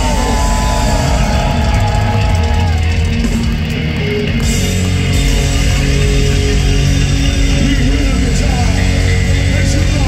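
Thrash metal band playing live through a festival PA: loud distorted electric guitars, bass and drums, with sustained guitar notes over the pounding low end.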